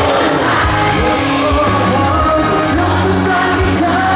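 Amplified pop song played through a stage PA: drums and bass come in about half a second in, with a male voice singing the melody.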